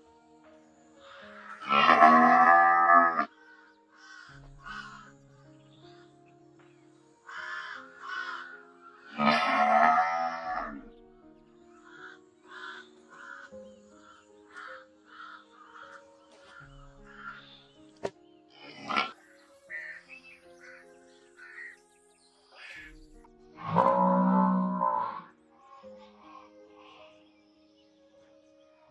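Cattle mooing: three loud, drawn-out moos of one to two seconds each, near the start, about ten seconds in and about 24 seconds in, over a steady background of music.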